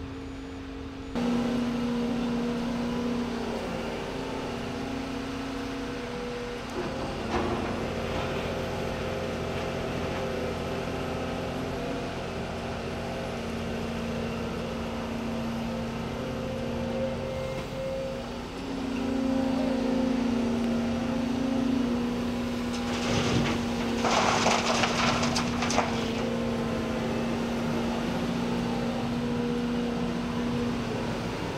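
Volvo EC 300E crawler excavator's diesel engine running under hydraulic load, its pitch stepping up and down as the boom and bucket dig and the machine swings. About three quarters through comes a louder, noisy rush lasting a couple of seconds.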